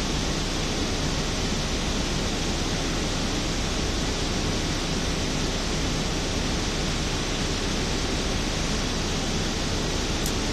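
Steady rushing noise with a low hum underneath, heard inside a car's cabin.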